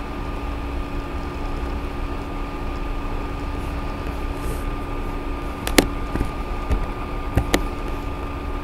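Steady background hum and hiss from the recording setup, broken near the end by two sharp computer-mouse clicks about a second and a half apart.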